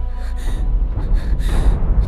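A woman's sharp, distressed breaths, a short one near the start and another about a second and a half in, over low, tense background music.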